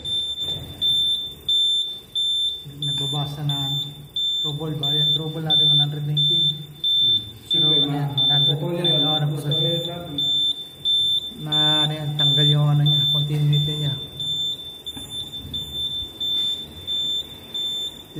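Notifier NFS-3030 fire alarm control panel's built-in sounder beeping at a high pitch in an even, repeating pulse, the panel's signal of a trouble condition, with voices talking over it.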